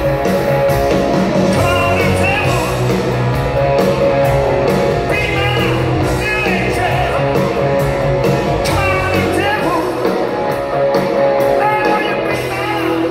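A rock band playing live: a man singing in short phrases over electric guitar, bass and drums, heard from the audience in a large hall.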